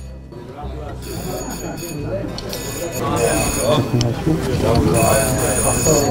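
A high electronic bell ringing in two bursts, about a second in and again near the end, over people talking: the ring that marks returning racing pigeons arriving at the loft.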